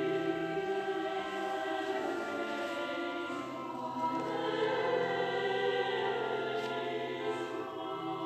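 Choir singing sustained chords with music.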